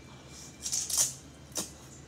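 Ramen noodles slurped up through the lips: a hissing slurp that builds to a peak about halfway through, then a shorter slurp near the end.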